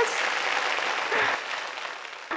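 Studio audience applauding, the clapping fading away over the two seconds.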